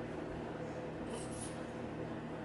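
Steady low room hum with a few constant low tones, and two brief faint high hissy sounds a little over a second in.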